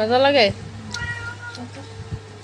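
A short, whiny cry of about half a second that rises and falls in pitch, followed by a fainter steady high note about a second in.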